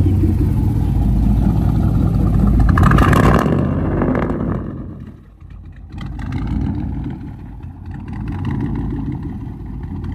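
Straight-piped exhaust of an OBS Chevy K1500 pickup, running straight from the headers to a 7-inch slash tip with no muffler, its stock engine just started. It runs loud and fast, rises to a peak about three seconds in, then drops to a quieter idle.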